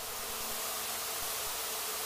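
A steady, even high hiss of outdoor background noise with a faint low hum beneath it.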